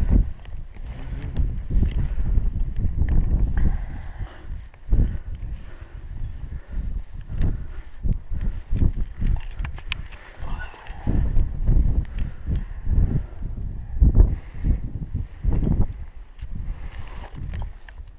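Wind buffeting the microphone in uneven gusts, with a few sharp clicks of climbing hardware as rope is handled at the anchor chains.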